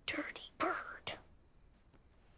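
Short whispered words, three quick bursts in the first second or so, then a faint lull.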